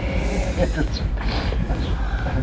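Indistinct talking over a constant low rumble.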